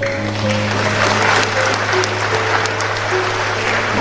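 Applause and general crowd noise from a room, a dense patter of claps, over a quiet steady background music bed.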